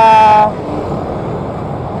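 A vehicle horn gives one short, loud honk of about half a second, then the steady noise of traffic on the road carries on.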